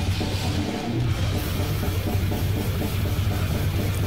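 Acoustic drum kit played along with a heavy metal recording with distorted guitars: a death metal drum cover, a dense run of rapid strokes.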